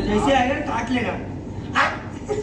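A person's voice making short, wordless calls, with a short, sharp burst near the end.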